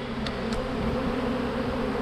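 A swarm of Carniolan honeybees buzzing in a steady hum as a package of bees is shaken out onto the hive frames, with two faint ticks in the first half second.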